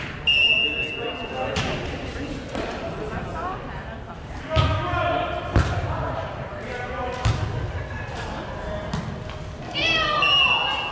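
A referee's whistle blows for about a second near the start. Then comes a beach volleyball rally: several sharp thuds as hands and forearms strike the ball, with players calling out.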